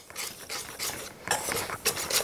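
Wire whisk stirring dry flour mixture in a stainless steel bowl: repeated short strokes of the wires through the flour and against the metal.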